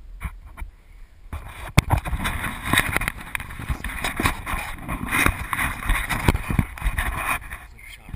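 Close rustling and scuffing of a hunter's movement: footsteps on dry brushy ground and clothing rubbing against a body-worn camera, with a sharp click about two seconds in. The noise starts about a second in and drops away shortly before the end, as he stops and raises the rifle.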